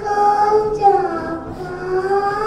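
A young child singing solo into a microphone, holding long notes that slide down in pitch and rise again.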